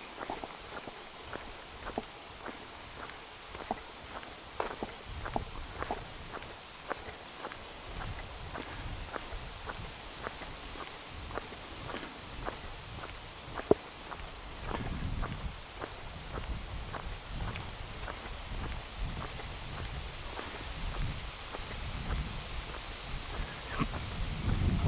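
Footsteps of a person walking on an asphalt road, steady at about two steps a second. A low rumble joins in about eight seconds in.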